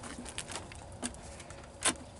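Faint scuffs and small knocks of someone climbing a wooden playground structure, with one short, louder knock or scrape near the end.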